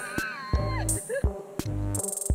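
Electronic background music with a drum-machine beat and deep bass. A wavering, sliding high melodic line drops away just under a second in.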